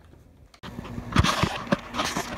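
Faint room tone, then an abrupt cut to outdoor noise with a few dull knocks and rustling from a handheld phone being moved about.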